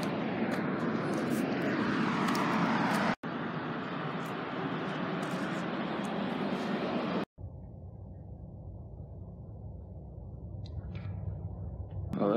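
Steady rushing outdoor background noise, like distant traffic or wind on the microphone, broken by a sudden cut about three seconds in. After a second cut a little past halfway, only a duller, lower rumble remains.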